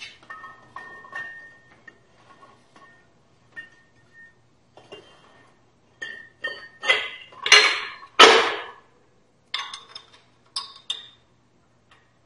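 Brake drum being slid back over the drum-brake shoes and hub by hand, metal on metal. A clink rings on for a moment at the start. Louder scraping rubs come a little past the middle as the drum goes over the shoes, and a few light clinks follow near the end.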